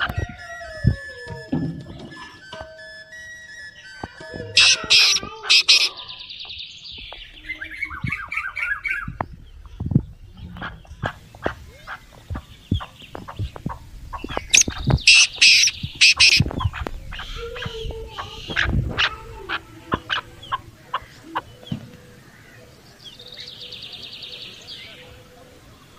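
Chickens and other birds calling, mixed with many short sharp clicks and knocks throughout and two louder high-pitched bursts, about five seconds in and about fifteen seconds in.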